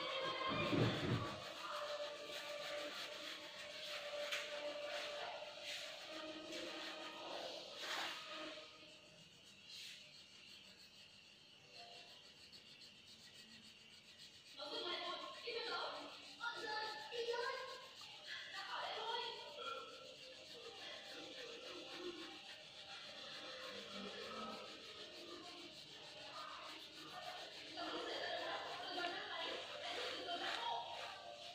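A crayon rubbing back and forth across paper as an area is shaded in, with faint voices and music in the background.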